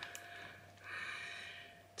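A faint click, then one short, soft breath out through the nose lasting under a second, over a faint steady electrical hum.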